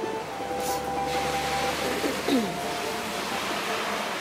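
Steady hiss of a rain-wet city street, with a low rumble for the first two seconds or so and a few faint held musical notes.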